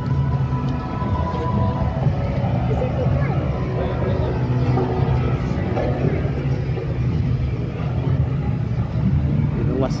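A steady, loud low rumble with no breaks, with faint voices of people nearby mixed in.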